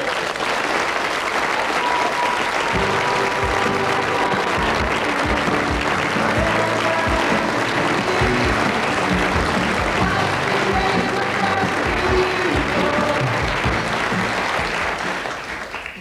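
Studio audience applauding, with the sitcom's closing theme music coming in under it about three seconds in, with a steady beat, and fading near the end.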